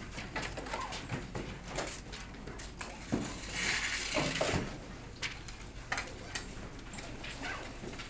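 Classroom handling noise as students get out paper: scattered small clicks and knocks, and a rustle a little past three seconds in that lasts over a second, with a faint low murmur under it.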